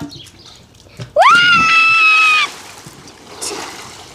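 A girl's high-pitched scream, rising sharply and then held for over a second, followed by the fainter splash and churn of water from a jump into a swimming pool.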